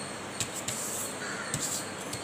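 A sheet of paper being pressed flat and folded on a table: a few short sharp taps and rustles.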